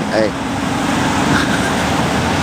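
Steady road traffic noise, with a motor vehicle running close by as a low, even hum.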